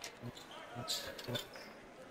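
A basketball bounced a few times on a hardwood court floor, short low thuds with a faint ring in a large gym.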